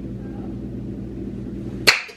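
A steady low hum, then near the end one sudden loud crash as a man collapses to a tile floor, a plastic cup and water-filter pitcher hitting the floor with him.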